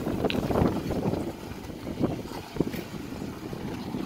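Jeep Wrangler Rubicon crawling slowly over rock with its engine running low, mixed with gusty wind on the microphone; a few short sharp ticks sound through it.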